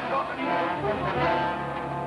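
Orchestral film score with brass, held chords.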